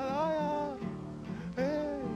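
Brazilian folk song: a man singing held, sliding notes over acoustic guitar accompaniment.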